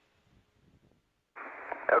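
Near silence at first. A little over a second in, a radio channel opens with a sudden band of static hiss, and a voice begins over it near the end.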